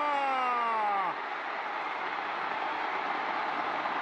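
Baseball stadium crowd cheering steadily after a home run. Over it, a TV commentator's long drawn-out shout falls slowly in pitch and ends about a second in.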